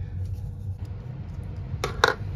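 Small plastic model-car suspension parts being handled, giving faint clicks and then one sharp click near the end. A low steady hum runs underneath.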